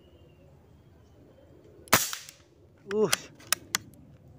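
A single shot from an unregulated PCP air rifle (a Javanese-made 'bocap'): one sharp crack about two seconds in, with a brief fading tail. A short spoken word and two quick sharp clicks follow near the end.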